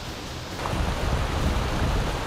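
Small waterfall: a steady rush of water spilling over rock, growing louder about half a second in.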